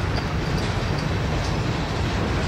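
Freight cars of a long mixed freight train rolling past steadily, their steel wheels running on the rails.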